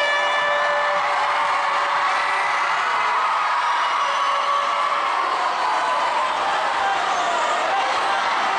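Spectators shouting and cheering without a break, many voices overlapping, with a long held tone in the first second.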